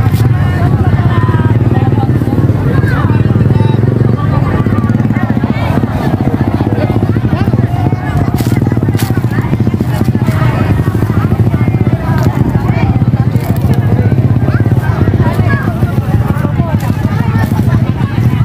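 Indistinct chatter of many people talking at once, over a loud steady low rumble.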